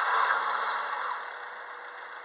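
Mazda 3 (BK) 1.6-litre petrol four-cylinder engine just after starting, its revs dropping from the start-up flare toward idle. It is loud at first with a high whine falling in pitch, then settles quieter and steady over the first second and a half.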